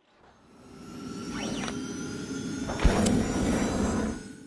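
Logo sting sound effect: a swelling whoosh that builds for about two seconds, a sharp low hit about three seconds in, then a fade-out.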